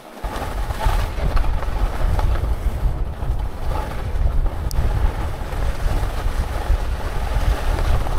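Wind buffeting the microphone of a skier gathering speed downhill, a loud, rumbling rush that starts suddenly and holds steady, with the hiss of skis sliding on snow beneath it.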